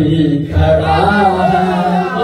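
Male voices chanting a noha, an Urdu Shia devotional lament, in a sustained melodic line amplified through microphones.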